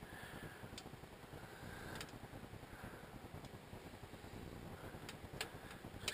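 Faint wood fire burning in a small Kimberly wood stove with its draft turned down to about a quarter, a low steady rush with a few sharp crackles about a second in, around two seconds in and near the end.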